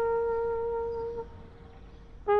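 Background music: a solo wind instrument holds one long steady note, which fades out a little past a second in.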